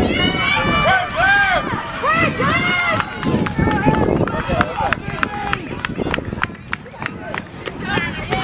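Spectators shouting encouragement, then a runner's quick, regular footfalls, about three a second, on the asphalt track with voices over them.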